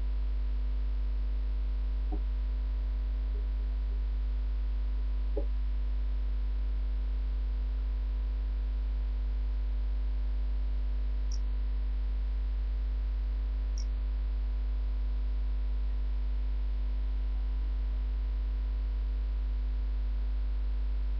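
Steady low electrical mains hum with fainter steady tones above it, picked up by the webcam's microphone, with a few faint clicks in the first few seconds and two brief high chirps near the middle.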